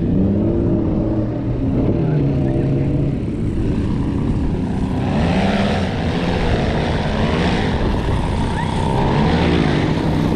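Tandem paramotor's two-stroke engine and propeller running as it flies in low to land, the engine note wavering up and down. From about halfway the high rushing of the propeller grows stronger as it comes close.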